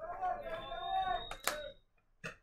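People talking, the speech trailing off after about a second, with one sharp click about one and a half seconds in.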